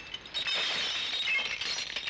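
Glass shattering, with shards and debris tinkling and clinking down in a dense, scattered patter.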